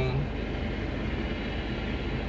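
Car engine idling, heard from inside the stationary car's cabin as a steady low hum.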